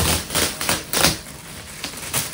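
A dachshund's claws scratching at a ridged plastic board in quick, rasping bursts, several in the first second and one more near the end.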